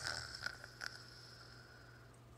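Faint handling of a plastic mini football helmet: a short rustle at the start, then a couple of light clicks. Under it, a faint high tone fades out over about two seconds.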